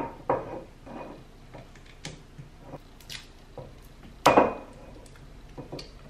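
A glass whiskey bottle being opened by hand: scattered small clicks, scrapes and taps at the cap and neck, with one louder knock about four seconds in.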